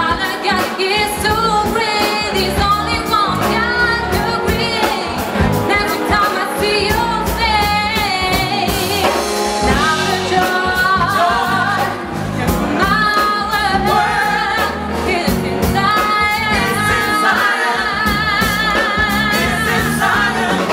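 Live soul/R&B band with a female lead singer singing long held notes with wavering vibrato and runs, backed by backing vocalists, with drums and cymbals keeping a steady beat.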